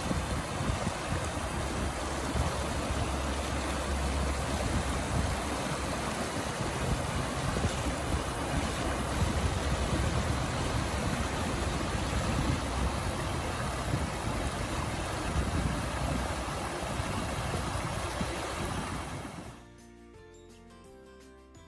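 Shallow creek rushing in rapids over rocks: a steady, loud wash of water that cuts off suddenly near the end.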